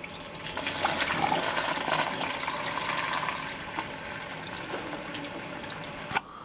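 Water poured into the centre of a Lomo UPB-1 film developing tank, splashing and churning over the spiral film reel; it swells about half a second in and goes on steadily. Poured in this way rather than through the fill hose, it floods the tank and overflows.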